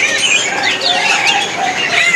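Many caged songbirds chirping and twittering at once: a dense, steady chorus of short, high calls overlapping one another.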